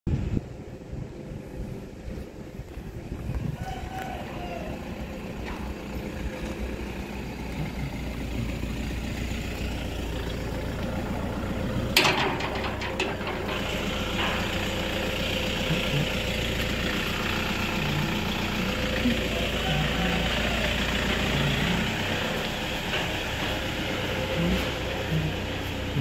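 Steady outdoor street noise with a low rumble, and a single sharp click about halfway through.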